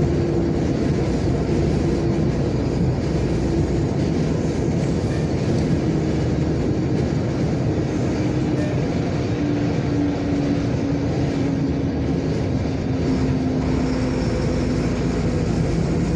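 Steady engine and road drone inside a moving vehicle's cab. A faint engine tone drops slightly in pitch about halfway through.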